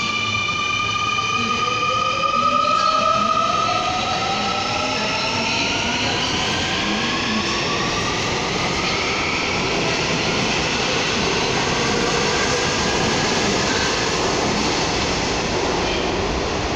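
Seoul Subway Line 2 electric train pulling away from the platform. The whine of its traction motors rises in pitch in several tones over the first several seconds as it speeds up, over the steady running noise of its wheels on the rails.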